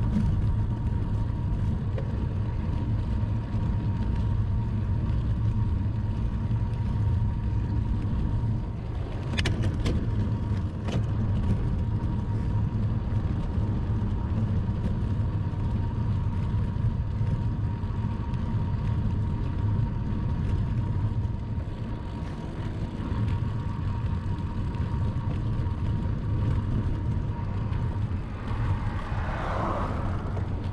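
Wind buffeting the microphone of a bicycle-mounted camera, together with tyre and road noise from the bike rolling on asphalt at about 20 km/h: a steady low rumble with a faint, steady high tone. There are two sharp clicks about ten seconds in.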